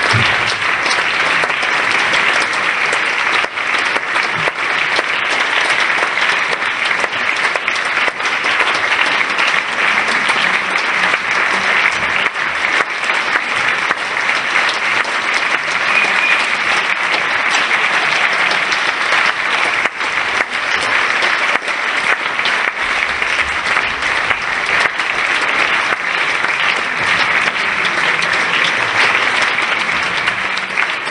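Dense, steady applause from a crowd: many hands clapping together at an even level.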